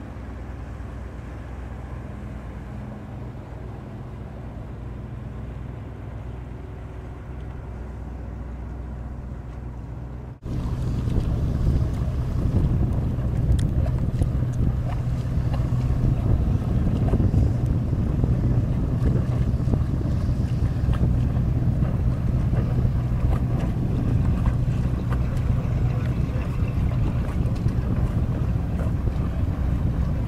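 Sailboat's inboard auxiliary engine running steadily as the boat motors slowly, with wind on the microphone. About a third of the way in the sound cuts and comes back louder, with the engine hum and wind noise stronger.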